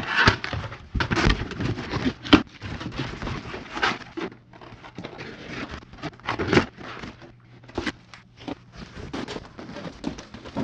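Corrugated cardboard boxes being handled and folded: irregular rustling and scraping with sharp knocks of the board.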